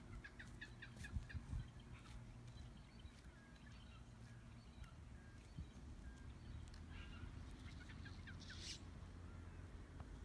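Faint outdoor bird calls: a quick run of short chirps about a second in, scattered single notes, then more chirps near the end, over a low steady hum.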